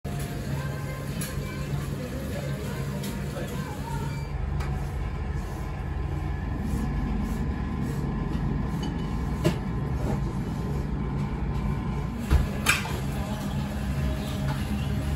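Steady low background rumble with music, and a few sharp clicks or knocks in the last few seconds.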